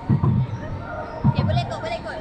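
Roller coaster car running, with a low heavy clunk about once a second, and faint voices over it.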